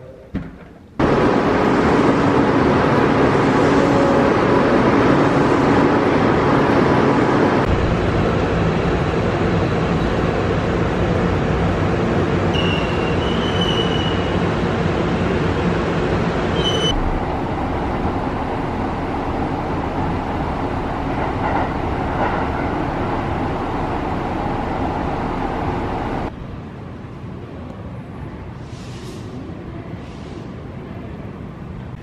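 Steady, loud running noise and rumble of a moving vehicle, cut into several clips. It starts suddenly about a second in, changes character twice along the way, and drops to a quieter hum near the end. A few short high squeals come through around the middle.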